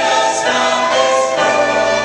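Large mixed choir singing sustained chords with orchestral accompaniment. The chord changes twice, about half a second in and again midway through.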